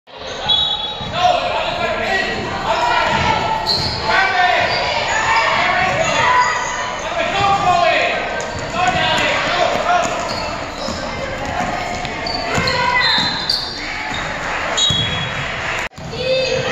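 A basketball bouncing on a gymnasium floor amid shouts and calls from players and spectators, echoing in the large hall.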